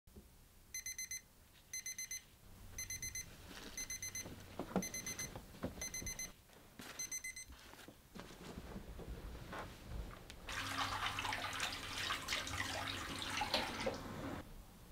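Digital alarm clock beeping in quick sets of four, about one set a second, stopping after about seven seconds when it is switched off, with rustling and knocks of movement. From about ten seconds in, a tap runs into a bathroom sink.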